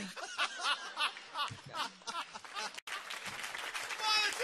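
Studio audience laughing and applauding after a joke, many voices over a wash of clapping, with a sudden break in the sound near the three-quarter mark.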